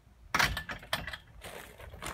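Footsteps crunching on dry leaves and dirt, a quick irregular run of crisp crackles starting about a third of a second in.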